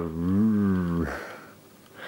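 A man's drawn-out 'uhhh' of hesitation lasting about a second, its pitch rising slightly and then falling, fading to quiet room tone.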